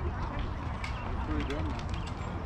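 Indistinct voices of people talking in the background, too faint to make out, over a steady low rumble.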